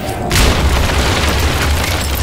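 Cinematic boom sound effect: a sudden loud hit about a third of a second in that carries on as a deep rumble, scored for a plane fuselage bursting through a portal onto the street.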